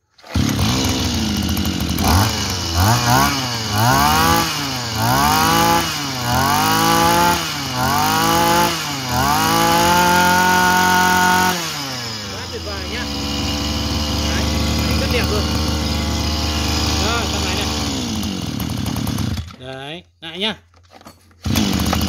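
A 26cc two-stroke Komatsu engine on a Ryobi backpack brush cutter starts straight away and is revved up and down about eight times, then held at high revs. Near twelve seconds in it drops back to a steady idle, cuts off near twenty seconds, and is heard starting up again right at the end.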